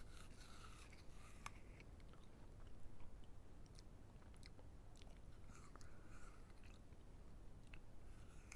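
Close-miked bites into a crisp raw apple and chewing of its flesh: faint crunches, scattered sharp clicks and wet mouth sounds, busiest near the start and again about six seconds in.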